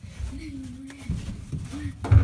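A person's wordless drawn-out vocal sound, wavering slightly in pitch, with low thumps and rumble from movement close to the microphone about a second in and again at the end.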